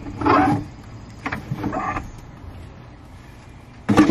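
A framed picture being pulled down from an overhead garage storage rack: scraping and creaking of the frame against the rack twice, then a sharp knock near the end.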